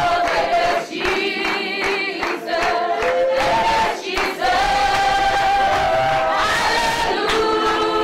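A church congregation singing a hymn together, many women's voices on long held notes.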